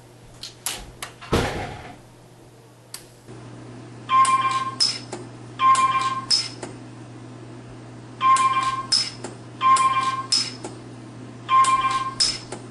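Orion pulse arc welder firing a series of spot welds. First come scattered sharp snaps, one stronger about a second and a half in. Then, over a steady electrical hum, each weld gives a click with a short high beep, repeating about every second and a half in loose pairs.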